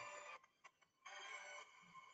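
A faint held electronic tone heard twice: the first ends just after the start, and the second begins about a second in and lasts about two seconds.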